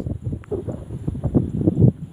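Wind rumbling on the phone's microphone, uneven and gusty, with handling noise as the phone is swung about. There is a small click about half a second in.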